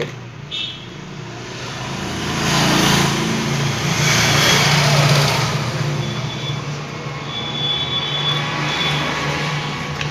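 A motor vehicle passing on the road, its engine hum and road noise swelling over the first few seconds, loudest around the middle, then easing to a steady traffic hum.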